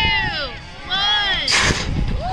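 Pumpkin cannon firing: one short, sharp blast of rushing compressed air about one and a half seconds in, after a few shouts.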